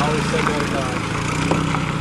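A Dodge sedan's engine running steadily at low speed as the car pulls away over gravel.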